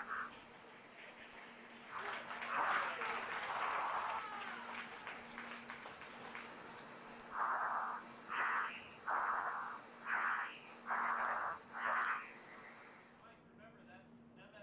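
Air-to-ground radio channel open during a stratospheric freefall: a longer stretch of garbled radio sound a couple of seconds in, then six short bursts of radio noise about a second apart, over a steady low hum.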